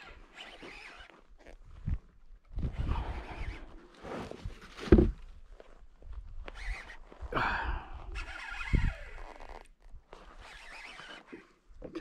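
Rustles and knocks from a baitcasting rod and reel being worked from a kayak against a hooked fish, with a sharp thump about five seconds in and a rasping buzz near eight seconds.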